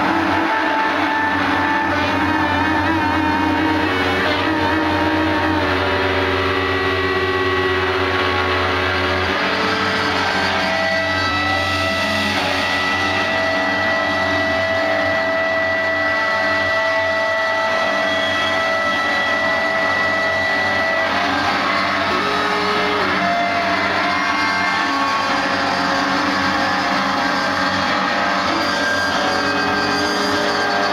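Live noise-rock band playing loud: distorted electric guitars and amplifiers in a dense, steady drone. Long held tones ring over it, one high tone running for several seconds mid-way, and a low hum drops out about nine seconds in.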